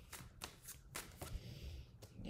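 Tarot cards being handled: a few faint, quick flicks and slides of cards as the next card is drawn from the deck.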